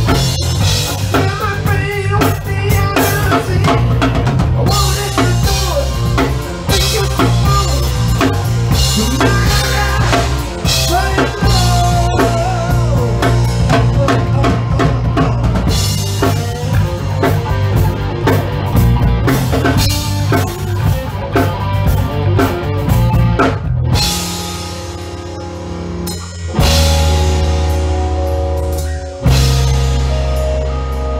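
Live rock band playing its own song, with drum kit, bass and other instruments, and no words in this stretch. A few seconds before the end the full band drops away to a quieter held chord for about two seconds, then comes back in.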